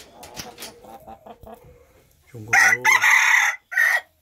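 Red junglefowl rooster crowing loudly and close by, starting a little past halfway. It is a single short crow, high-pitched, with a brief break before a clipped final note.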